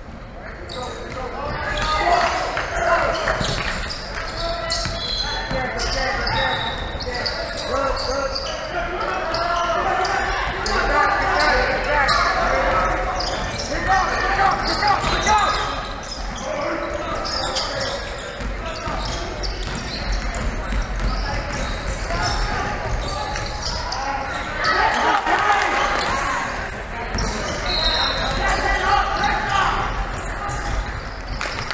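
Basketball bouncing on a hardwood gym court during play, with voices of players and spectators calling out, echoing in the large hall.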